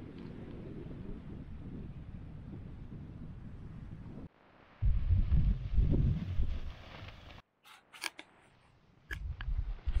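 Wind rumbling on the microphone, gusting hard for a couple of seconds in the middle, then a few sharp clicks and more wind near the end.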